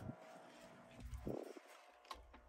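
Quiet room tone with a faint steady hum, and a brief low rumble of the phone being handled about a second in.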